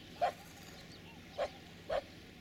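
Feral dogs barking: three short barks, the last two close together.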